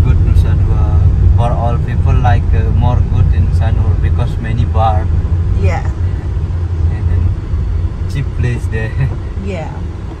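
Voices talking inside a moving Honda taxi, over the car's steady low engine and road rumble in the cabin.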